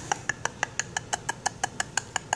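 Quick, breathy, unvoiced laughter: an even run of short huffs, about six a second.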